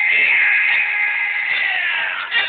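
A long, high-pitched yell held for about two seconds, dropping in pitch near the end, over music.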